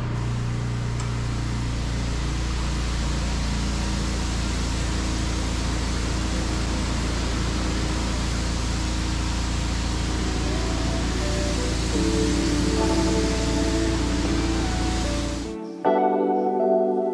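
Pressure washer spraying: a steady hiss of the high-pressure jet from a lance on an extendable pole, washing the underside of a barn roof, over a steady low hum. Background music with plucked notes comes in about twelve seconds in, and the spray stops suddenly just before the end.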